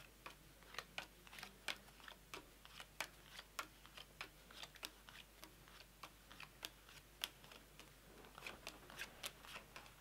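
Playing cards dealt one at a time onto a tabletop into three piles, each card landing with a faint light snap, roughly two a second at an uneven pace.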